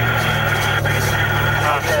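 A vehicle engine running with a steady low hum, heard from inside the vehicle; a voice starts near the end.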